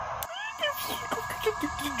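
A high, squeaky, meow-like voice in short calls with quick falling pitch glides, starting after a click about a quarter second in, over a faint steady hum-like tone.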